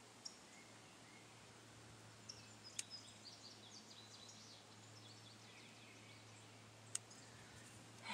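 Near silence with a low steady hum, broken by a few sharp snips of small garden snips cutting seedlings at the soil, the clearest about three seconds in and again near the end. Faint bird chirps sound in the background.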